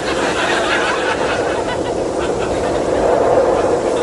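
Studio audience laughing, a steady, sustained wash of crowd laughter with no talking over it.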